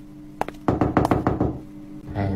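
Knocking on a toilet-stall door, a cartoon sound effect: a single tap, then a quick run of knocks lasting under a second.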